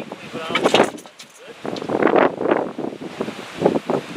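People talking, with wind on the microphone.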